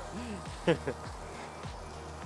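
Speech and music only: a man says "all" over quiet background music with a steady low bass.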